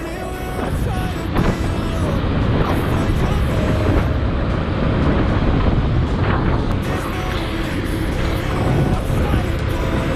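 Motorcycle engine running as the bike rides along, heard under a steady rushing noise.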